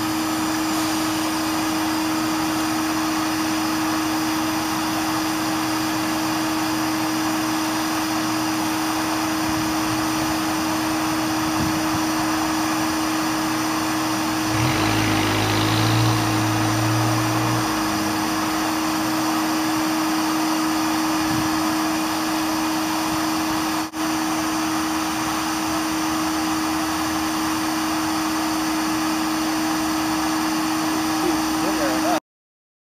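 A bee vacuum's motor running steadily with a constant hum while bees are drawn into its cage. About halfway through, a lower, louder sound comes in for a few seconds, and the sound cuts out for an instant a little later.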